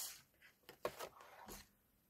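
Quiet handling of card on a scoring board: a short scratchy hiss at the start, then a few light clicks and taps about a second in as the card and scoring stylus are moved on the board.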